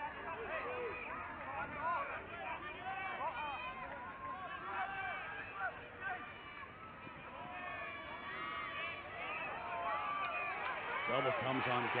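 Many overlapping voices shouting and calling out on a lacrosse field, short indistinct yells from players, sidelines and a sparse crowd, with no clear words. A man's voice comes in louder near the end.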